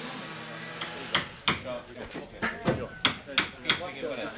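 Hammer blows on timber framing: a run of about eight sharp knocks, two to three a second, with low voices underneath.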